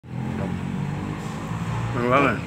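An engine runs steadily with a low hum.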